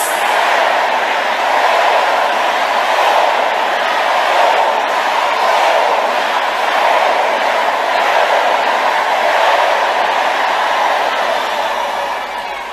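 A large congregation praying aloud all at once, many voices blending into a loud, steady roar of fervent prayer.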